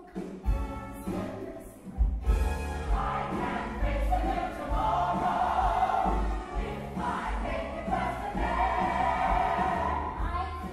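A stage-musical number with the ensemble singing together over the pit band. There are repeated low drum hits, and the voices swell fuller about three seconds in.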